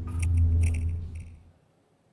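Low hum from a live handheld microphone with a few faint rustling clicks of the microphone being handled. It cuts off about one and a half seconds in, leaving near silence.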